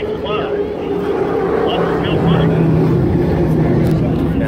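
Offshore race boat's engines droning steadily as it runs past, growing louder about halfway through. The boat is running below full power, which the onlooker puts down to its engines being in Guardian protection mode.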